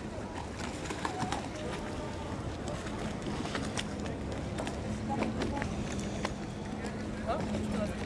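Busy waterfront ambience: indistinct voices of people around, water sloshing against a stone quay, and scattered small clicks. A steady low hum grows stronger about halfway through.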